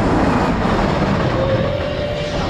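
Big Thunder Mountain's mine-train roller coaster running past on its track close by, a heavy steady rumble. A thin steady whine joins about a second and a half in.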